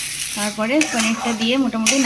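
A spatula stirring and scraping a thick masala paste around a steel kadai, with a light sizzle as the spice paste is being fried.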